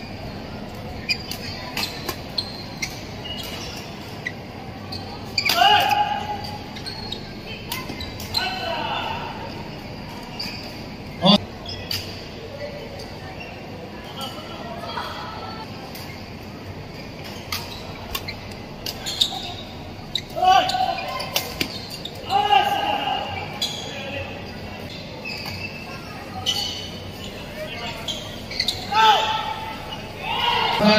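Badminton rally in a large echoing hall: repeated sharp cracks of rackets striking the shuttlecock, the loudest about eleven seconds in. Short shouts break in now and then.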